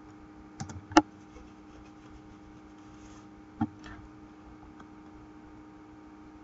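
A few keystrokes on a computer keyboard, the loudest about a second in, over a faint steady hum.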